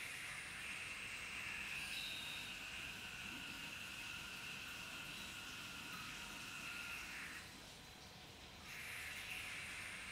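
Tap water rushing through a filter pump (water aspirator) into the sink, drawing suction for vacuum filtration through a Büchner flask: a steady hiss. The hiss drops away about seven and a half seconds in and returns about a second later.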